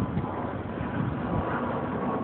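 Steady road traffic noise from the adjacent street, a low rumble and hiss with no single sharp event.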